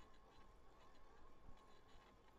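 Near silence: faint background hiss with a thin steady tone under it.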